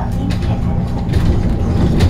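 Metro Cammell electric multiple unit running along the line, heard from inside the car: a steady low rumble from the wheels and running gear with a steady motor whine held under it, and irregular sharp clicks and rattles.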